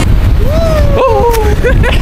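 Wind buffeting the microphone, a heavy low rumble that goes on throughout. A person's voice gives one long, slowly falling exclamation in the middle, and a short call follows near the end.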